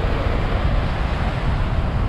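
Gulf surf breaking and washing around the legs in shallow water: a steady rush of moving water. Wind buffets the microphone with an uneven low rumble.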